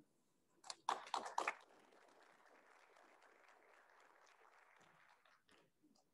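A few brief clicks and knocks about a second in, handling noise at the lectern picked up by its microphones, then near silence with faint room tone.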